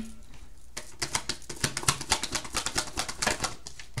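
A deck of tarot cards being shuffled by hand: a rapid run of papery card clicks, about ten a second, from about a second in until shortly before the end.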